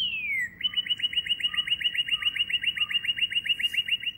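Male northern cardinal singing: one long down-slurred whistle, then a fast, even trill of short slurred notes, about seven a second.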